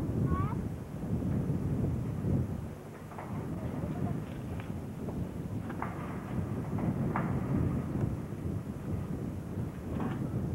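Wind rumbling on the microphone, rising and falling, with a few brief, faint voices.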